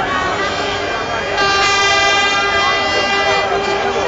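Crowd of celebrating football fans shouting, with a horn blasting one long steady note for about two seconds, starting about a second and a half in.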